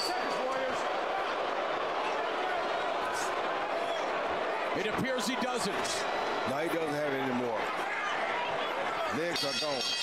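Boxing arena broadcast audio: a steady crowd hubbub under faint TV commentary. Near the end a bell rings out, ending the round.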